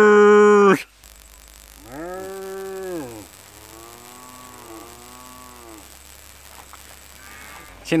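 Herd of black-and-white Holstein-Friesian dairy cows mooing: one long moo about two seconds in, then several cows mooing over one another for about the next three seconds.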